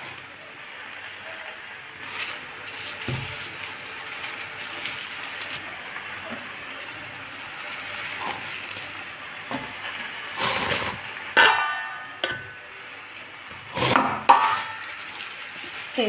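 A plastic bag of sticky jaggery being squeezed and worked by hand, the plastic crinkling steadily. A few knocks and clinks against a steel pan come in the second half, with two louder ringing clinks.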